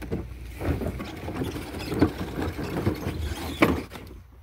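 A hollow plastic ride-on toy car (a Little Tikes Cozy Coupe) being pushed along by hand over the ground, its body and plastic wheels rattling and knocking irregularly, with sharper knocks about two seconds in and just before the end.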